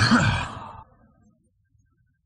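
A short, breathy burst of a man's voice, like a sigh, which fades out within about the first second. After that there is near silence.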